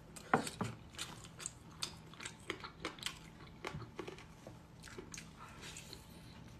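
Close-up mouth sounds of a person chewing and biting glazed chicken wings: irregular sharp clicks and smacks, several a second, the loudest about a third of a second in.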